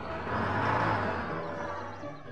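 Cartoon sound effect of a school bus driving off: a vehicle whoosh that swells and then fades away, over background music.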